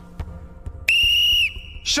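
Referee's whistle blown in one loud, steady blast of about half a second, stopping play after a foul.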